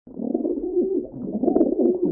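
White doves cooing: a continuous run of low, wavering coos.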